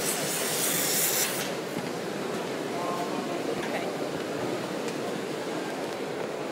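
Packaging machinery running in a busy exhibition hall, a steady mechanical din with distant voices in it. A burst of hiss rises over it in about the first second and a half.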